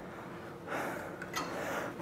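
A man breathing out hard, a soft hiss of breath lasting about a second, with one faint click partway through.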